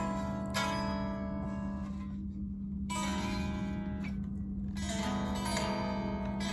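Telecaster-style electric guitar: rich extended chords struck and left to ring, a new chord about half a second in, another at three seconds and another at five, over a steady low hum.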